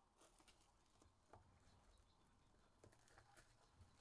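Near silence, with faint, scattered crinkles and clicks of plastic shrink wrap and foil card packaging being handled and torn open.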